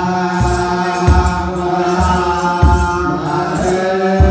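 Ethiopian Orthodox liturgical chant (mahlet) sung by a group of male voices on long held notes, with regular deep beats of a kebero drum and the jingle of hand-held sistra.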